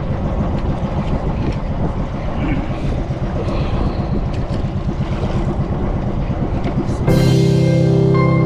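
A small fishing boat's engine running with a steady, fast low throb, kept running to hold the boat against wind and a strong current. Background music comes in about seven seconds in.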